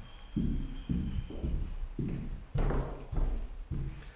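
Footsteps of a person walking across a carpeted floor: steady, dull low thuds, a little under two steps a second.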